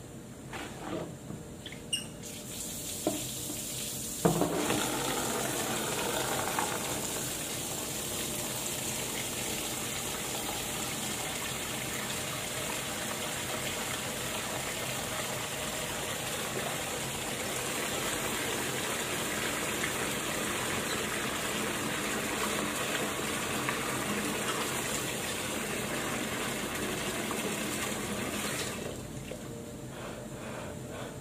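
Water running from a tap into a laundry sink, a steady rush that starts suddenly about four seconds in and shuts off shortly before the end. A few sharp clicks and knocks come before the water starts.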